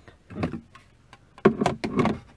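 An ABS plastic console storage tray being lifted out of a car's center console: a couple of light knocks, then a quick run of plastic clicks and knocks in the second half.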